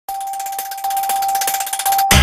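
Electronic logo sting opening a TV news broadcast: a steady high tone held over a rapid, even ticking.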